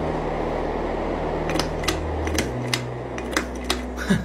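Ceiling fan running with a steady hum while its pull-chain switch is yanked, giving a quick series of about six or seven sharp clicks over two seconds; the motor hum shifts about halfway through as the speed setting changes.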